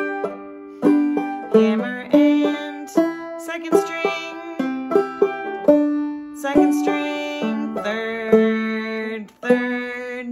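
Five-string banjo played clawhammer style: melody notes struck downward, brushed chords and thumbed drone-string notes, at about two notes a second.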